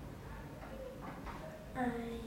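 Speech only: a girl's voice answering quietly, growing louder near the end.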